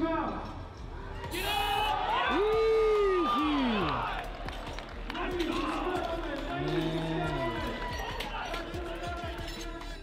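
A crowd and handlers in a large hall shouting long, rising and falling yells of encouragement during a heavy barbell squat, loudest while the lifter drives out of the hole. Music plays underneath, and the bar and plates knock a few times as the weight is racked and stripped.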